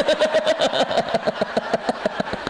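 Hearty laughter: a woman's voice laughing in a long rapid run of 'ha-ha' pulses, about eight to ten a second, with the audience laughing along. The run slows and fades near the end.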